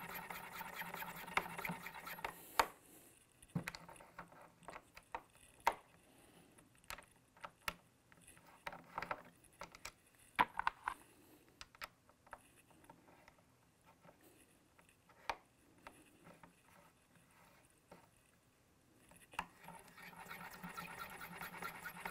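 Forster Original Case Trimmer in use on brass rifle cases. The hand-cranked 3-in-1 cutter scrapes softly as it trims and chamfers a case mouth, at the start and again near the end. In between come scattered light clicks and taps as the collet is opened and a case is swapped.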